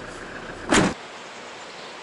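A single car-door thud about three-quarters of a second in. The low rumble heard before it stops with it, and a steady hiss of rain follows.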